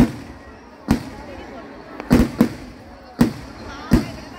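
Fireworks going off in the night sky: a string of about seven sharp bangs at uneven intervals, three of them close together about halfway through.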